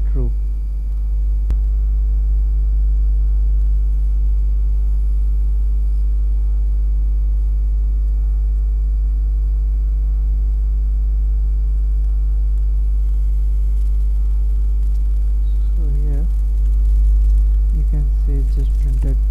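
Steady low electrical hum with many evenly spaced overtones, and a faint click about a second and a half in.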